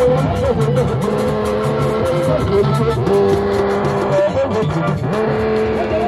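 Live band music: a fast, regular percussion beat under long held melodic notes.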